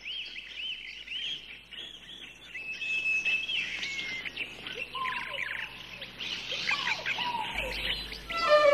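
Small birds singing and chirping: a run of quick arched chirps, a steady held whistle about three seconds in, and some lower calls near the end.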